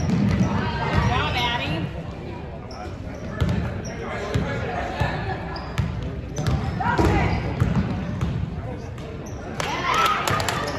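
A basketball being dribbled on a hardwood gym floor, with sneakers squeaking now and then and voices calling out, all echoing in the gym.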